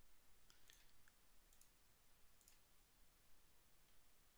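A few faint computer mouse clicks, spread out over several seconds of near silence.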